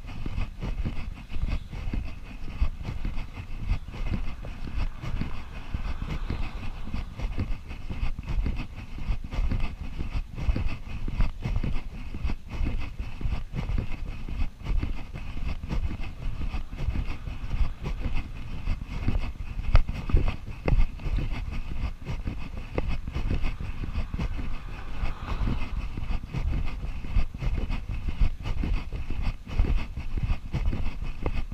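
Wind buffeting a GoPro camera's microphone, a rough, continually fluctuating low rumble.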